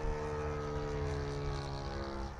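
Saito FA-125 four-stroke glow engine of a large radio-controlled P-40 model plane, droning steadily in flight overhead.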